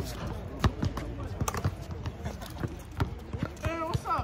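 A basketball being dribbled on an outdoor hard court, making sharp bounces at uneven intervals.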